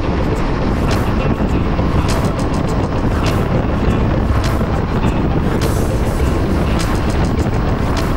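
Background music with a regular beat playing over a Yamaha sport-touring motorcycle cruising at highway speed, its engine and wind noise running steadily underneath.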